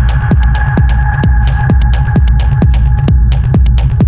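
Techno: a steady kick drum at about two beats a second over a deep, heavy bass, with crisp high ticks between the beats and a thin held synth tone that fades out toward the end.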